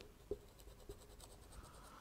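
Marker pen on a whiteboard drawing a dashed line: a faint run of short strokes, a few clearer ticks near the start.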